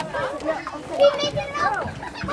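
High-pitched young children's voices calling and chattering, with one short louder burst about a second in.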